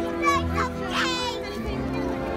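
Children's voices chattering and calling out over background music, with one high, wavering child's shout about a second in.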